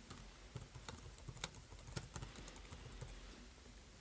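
Computer keyboard typing: a quiet run of irregular key clicks as a line of text is typed.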